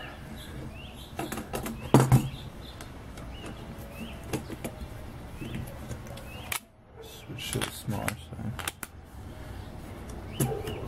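Irregular clicks and light knocks of a screwdriver and hands working over an open sheet-metal chassis during a teardown, the sharpest about two seconds in and a quick run of them past the middle. Short chirps from small birds sound faintly behind.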